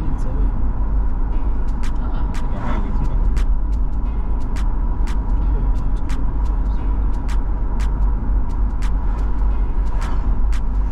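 Car driving on a highway, heard from inside the cabin: a steady low road and engine rumble, with a sharp tick repeating about twice a second over it from a second or two in.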